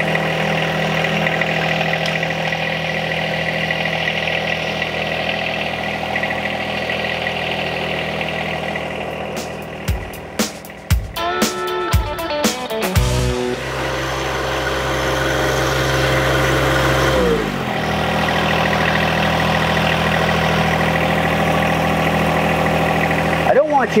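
John Deere 1025R compact tractor's three-cylinder diesel running steadily while the tractor drives away from its parked loader. Around the middle come several clicks, then a deeper, heavier note from the engine and drive that falls away before the steady running returns.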